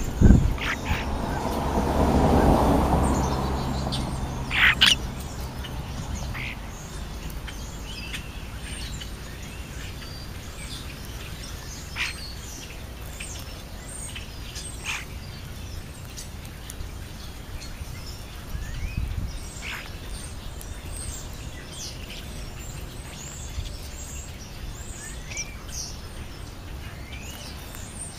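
European starlings calling with scattered short chirps and whistles. A knock at the very start and a rush of noise over the first few seconds are the loudest sounds.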